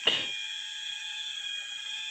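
A steady, high-pitched whine made of several even tones sounding together, typical of tropical forest insects such as cicadas. A brief, sharper sound comes right at the start.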